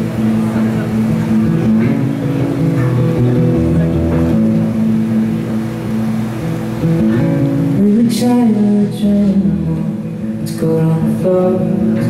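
Live band playing a slow instrumental intro: acoustic guitar over held chords that change every few seconds, with low bass notes coming in at intervals. A brief crash sounds about eight seconds in.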